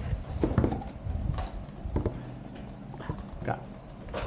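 Cardboard shipping box handled on a wooden table: a few irregular knocks and taps as it is turned and pushed about.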